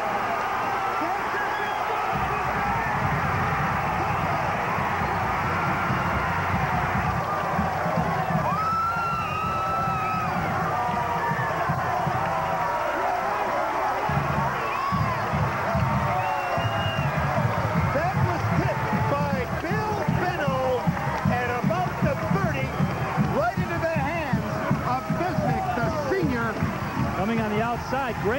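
Football stadium crowd cheering, shouting and whooping after a long touchdown pass is caught, with music playing underneath.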